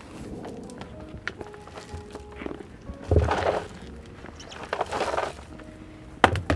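Mulch poured from a plastic bucket into a tall planter: a thump and a rustling pour about three seconds in, then a second, shorter pour near the end.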